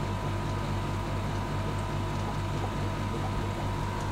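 Steady low hum of aquarium equipment running, with a faint hiss of water.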